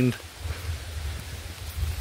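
Steady low rumble of wind buffeting a handheld microphone, with a faint even hiss over it.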